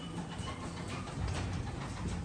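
Workshop background noise: a steady low machinery rumble with a few faint clicks.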